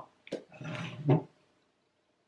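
A woman's short, breathy vocal sound, a low groan-like noise lasting about half a second, just after a small click.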